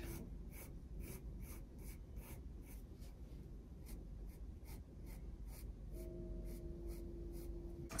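Pencil scratching on textured watercolour paper in quick, even strokes, about four a second, as a butterfly outline is sketched. A faint steady hum comes in about six seconds in.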